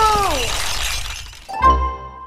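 A high wail sliding steeply down in pitch over a crash of shattering, clattering noise that fades away, then about a second and a half in a short logo sting: a low boom with a ringing chime note held and dying away.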